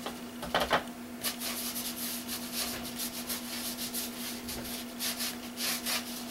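Paint being brushed onto a paper journal page: repeated short, scratchy strokes. A steady low hum runs underneath.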